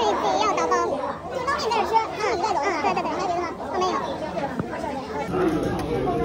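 Several voices talking at once in lively chatter, with pitches rising and falling. Near the end the background changes to a steadier low hum under the voices.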